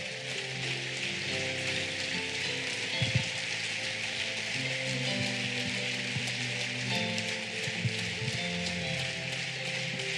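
Congregation applauding, a dense steady clatter of clapping, over sustained electronic keyboard chords that shift every couple of seconds.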